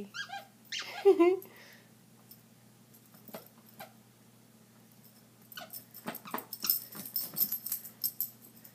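A small dog playing on a bed, with a run of quick knocks and rustling of the bedding in the last few seconds. A person laughs about a second in.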